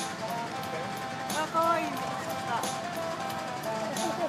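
People's voices talking, with music playing in the background.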